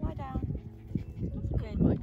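Small white dog whining for food as it is being hand-fed, two short high cries, one near the start and one near the end, with a voice in the background.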